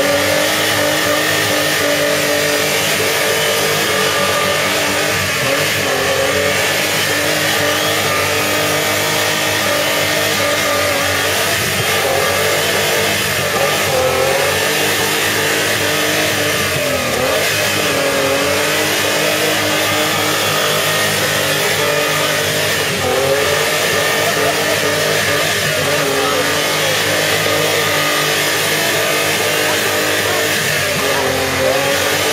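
Off-road 4x4 buggy's engine held at high revs under load as the buggy crawls up a muddy track. Its pitch stays high and steady, dipping briefly four times from about halfway through and picking up again each time.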